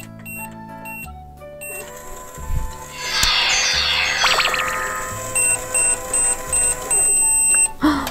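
Toy microwave started at its buttons: an electronic running sound with a flourish falling in pitch, then a run of short beeps about two a second ending in one longer beep, the toy's signal that the cycle is done.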